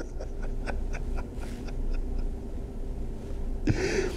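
A man's quiet wordless vocal sounds: a faint, drawn-out hum with small mouth clicks, then a sharp breath near the end.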